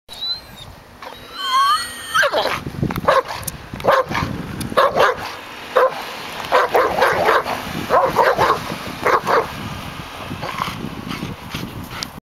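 German Shepherd giving a high, wavering whine, then barking about once a second, some barks coming in quick pairs.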